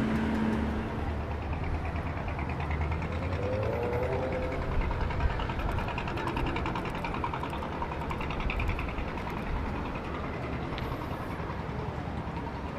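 Outdoor city ambience by a river: a steady low hum of motor traffic and boats under a general wash of street noise.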